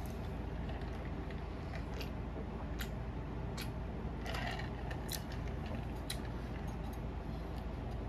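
A woman drinking from a stainless steel tumbler: faint mouth clicks and swallows over a steady low hum.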